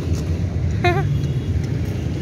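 Steady low rumble of outdoor background noise, with a brief snatch of a voice about a second in.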